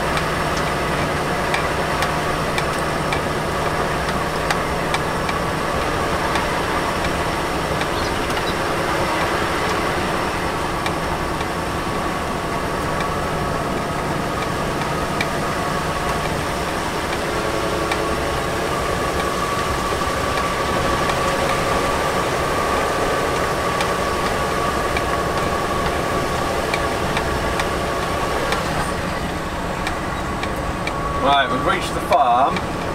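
Volvo FH lorry's diesel engine running steadily at low speed, heard inside the cab, with road noise and faint clicks and rattles now and then.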